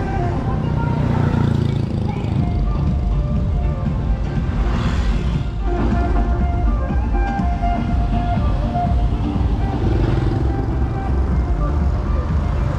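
Background music laid over street traffic, with cars and motorbikes passing close by and a steady low rumble of road noise.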